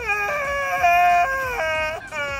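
A man wailing in a long, high-pitched cry, drawn out over several held notes that step up and down in pitch, loudest about a second in.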